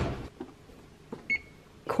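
A thump right at the start, then a single short electronic beep from the oven's timer about a second and a half in, signalling that the bake is done.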